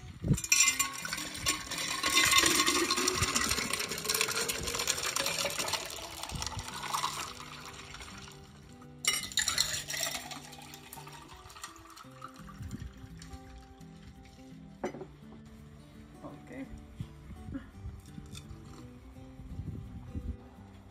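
Lemonade poured from a plastic pitcher into a glass pitcher, the pitch of the pour rising steadily as the pitcher fills. About nine seconds in, a second, shorter pour into a drinking glass, its pitch also rising as the glass fills.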